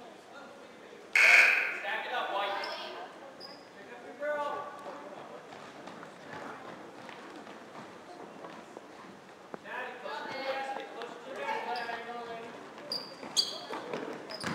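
Girls' basketball game in a gym: a sudden loud shout about a second in, then scattered voices calling out over a basketball bouncing on the wooden floor.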